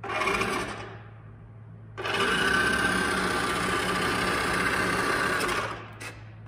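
Small electric motor and plastic gearbox of a toy RC pickup truck whirring: a short burst, then a steady run of about four seconds that stops shortly before the end.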